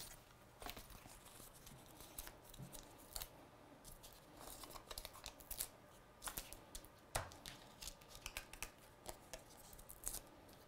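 Faint paper handling: adhesive foam pads pulled off their sheet, their backing peeled, and pressed onto a die-cut card flower, giving scattered small clicks, crinkles and short peeling scrapes.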